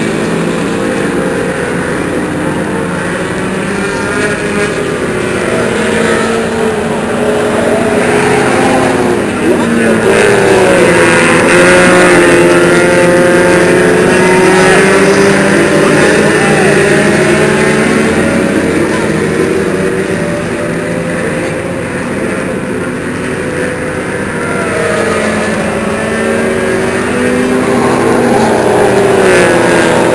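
Engines of small compact race cars running laps on a paved oval, their pitch rising and falling as they pass. Loudest about ten to seventeen seconds in and again near the end, as the cars go by close.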